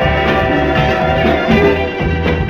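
Instrumental passage of a soul single: a chord held for about a second and a half over a steady bass, then moving into a new phrase.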